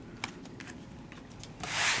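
Trading cards being handled, a soft rubbing of card and plastic sleeve against each other and the fingers, with a few light clicks, then a louder rush of rubbing noise near the end.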